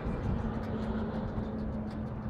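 Kawasaki Vulcan 1600 Classic's V-twin idling through aftermarket Cobra exhaust pipes: a steady low rumble with an even hum.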